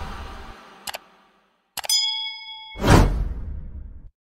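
Sound effects for an animated subscribe button: a short click, then a click and a bell-like ding that rings for about a second, followed by a loud rushing burst, the loudest sound, that dies away by the end. The tail of loud music fades out in the first second.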